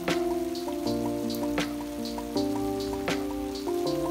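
Background music: sustained synth or keyboard chords that change every second or so, over a soft percussive hit about every second and a half.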